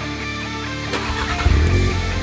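Rock music with electric guitar; about a second and a half in, a Volkswagen Mk7 Golf GTI's turbocharged four-cylinder starts up through its aftermarket catback exhaust and runs with a low rumble under the music.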